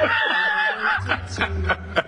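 People chuckling: light, soft laughter.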